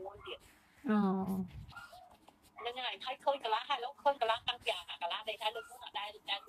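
A woman talking in Khmer.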